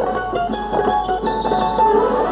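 Hindi film song music in an instrumental passage, led by a quickly plucked string instrument over held accompaniment.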